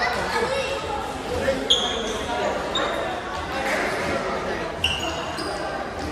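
Voices and footfalls of many young players echo through a large gym hall. Three short high squeaks of shoes on the court floor come about two, three and five seconds in.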